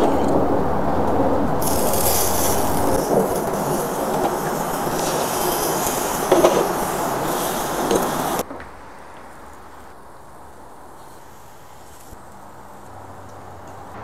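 A steady rushing noise with a few light clinks as oyster shells are set on the grate of a charcoal kettle grill. The noise cuts off suddenly about eight seconds in, leaving a faint low hum.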